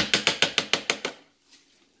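A metal spoon tapped rapidly against the rim of a plastic food processor bowl, about ten quick clicks in a second, getting weaker, to knock off the last of the salt.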